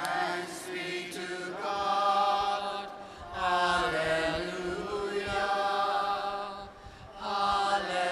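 A man's voice chanting into a microphone in long, slowly bending sung phrases, with two short breath pauses between them.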